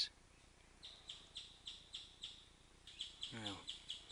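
A bird calling with a repeated short, high chirp, about three or four a second, starting about a second in.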